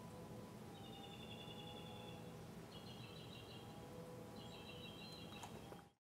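Faint outdoor background with a bird trilling three times, each high trill about one to one and a half seconds long. The sound cuts off just before the end.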